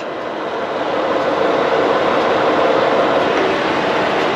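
Steady mechanical background noise of running engines or machinery, growing a little louder over the first second and then holding level.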